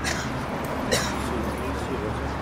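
City street ambience with a steady low rumble and one short, sharp sound about a second in.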